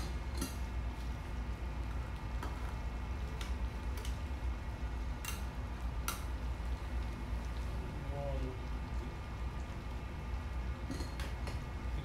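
A metal ladle clinking and scraping against a wok of coconut-milk stew a few times as a portion is scooped out, over a steady low hum.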